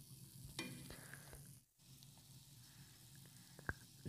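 Faint sizzling of chopped vegetables frying in a nonstick pan, with a few soft scrapes of a silicone spatula stirring them and a light tap near the end.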